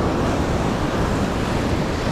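Ocean surf washing up the beach, a steady rushing noise, with wind buffeting the microphone.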